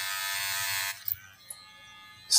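Gold cordless electric hair trimmer running against the side of the head, trimming hair with a steady high buzz. It switches off about a second in, followed by a short click.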